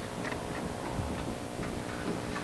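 Pages of books being handled at a lectern: sparse, irregular light ticks and rustles over a steady faint hum.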